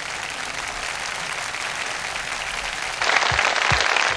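Audience applauding. About three seconds in, the clapping grows louder and a few low drum beats come in as the band starts to play.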